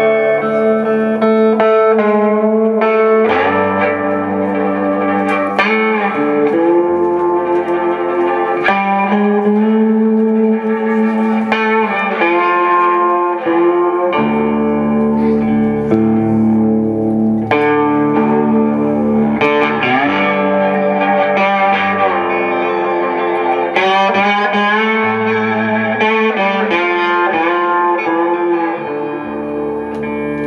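Live blues band playing an instrumental passage: electric guitar leading over bass guitar and drums, with pitch-bending guitar notes.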